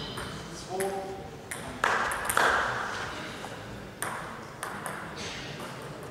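Table tennis ball clicking sharply a few times, about half a second apart, in the second half, as it is bounced before a serve. A short voice is heard about a second in, and a louder burst of noise comes about two seconds in.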